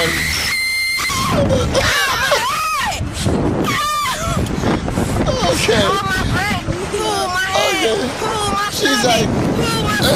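Girls screaming and shrieking on a Slingshot amusement ride, high-pitched cries again and again over a steady rushing noise, with a man laughing.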